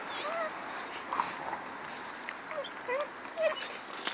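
Pit bull puppies whimpering: about five short, high whines with bending pitch, scattered through a few seconds.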